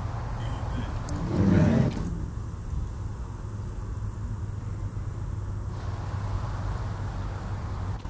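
A steady low rumble, with one brief louder sound about a second and a half in.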